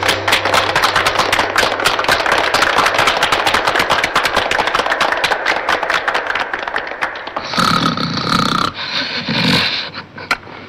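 Audience applause: a dense patter of hand claps that dies away about seven and a half seconds in, followed by a short, different sound.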